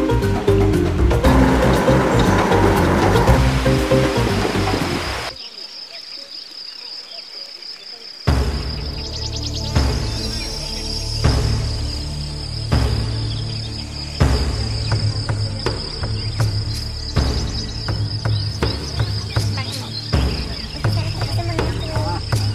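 Background music that fades out about five seconds in. After a short lull, crickets trill steadily over a low, slow rhythmic beat.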